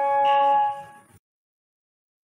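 The last held note of a 1948 Pathé 78 rpm recording of a Chinese popular song, one steady pitch that dies away about a second in as the record ends.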